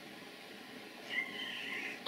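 A house cat gives one short, high meow about a second in; before it there is only faint room tone.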